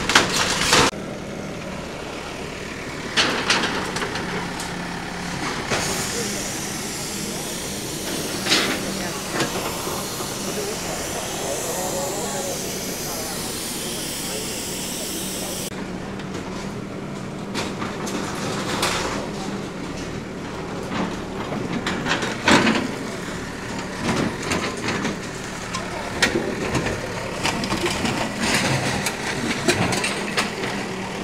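Heavy machinery's engine running with a steady hum, under voices of people nearby and a few sharp knocks.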